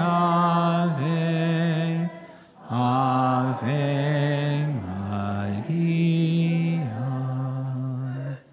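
A man's voice singing a slow Portuguese Marian hymn, holding long notes of about a second each with a wavering vibrato and a brief breath pause about two seconds in.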